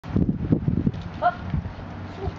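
German Shepherd puppy's paws thumping on the boards of a small A-frame as it scrambles up: a quick run of hollow knocks in the first second, followed about a second in by a brief high-pitched cry.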